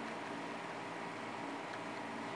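Quiet steady hiss with a faint hum underneath: the background noise of a voice recording, room tone between sentences.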